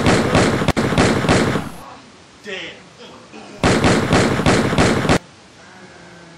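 Rapid mock machine-gun fire at about four shots a second, in two loud bursts: the first cuts off about two seconds in, the second runs from about three and a half to five seconds. A faint voice is heard between the bursts.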